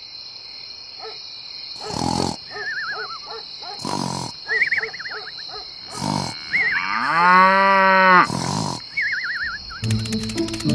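A cow mooing: one long call about seven seconds in, the loudest sound. Under it runs a steady high-pitched hum, with short sharp bursts about every two seconds and warbling chirps between them.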